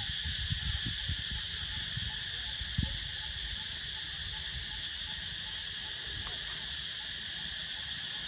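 Steady insect chorus, a high-pitched drone that holds unchanged throughout. A few low bumps on the microphone in the first three seconds, the loudest just before three seconds in.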